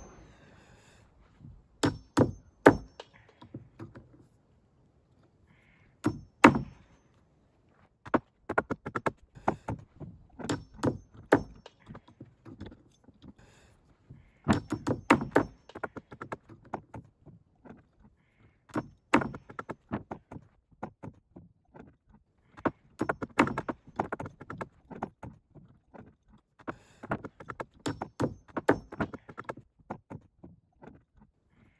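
Hammer knocking nails out of old pressure-treated decking boards: irregular bursts of sharp strikes with short pauses between.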